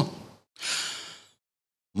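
A man's audible breath into a close desk microphone, about half a second in and lasting under a second, unpitched and breathy, with dead silence before and after it.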